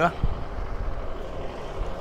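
Steady low outdoor rumble with wind buffeting the microphone.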